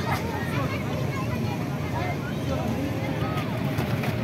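Children's voices and chatter over a steady low rumble.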